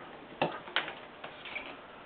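Small clicks of push-on wire connectors being wiggled and pulled off a loudspeaker crossover circuit board: a sharp click about half a second in, another shortly after, then a few fainter ticks.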